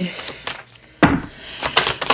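A deck of tarot cards being shuffled by hand: a sudden riffle about a second in that fades, then a few light clicks of cards.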